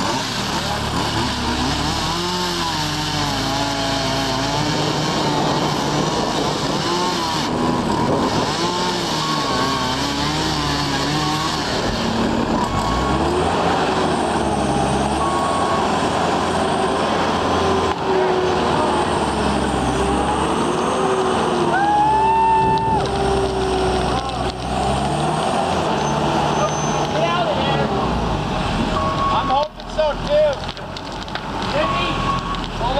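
New Holland L225 skid steer's diesel engine running under load as it works a tree stump, its pitch rising and falling, with a brief rising whine a little past two-thirds of the way through.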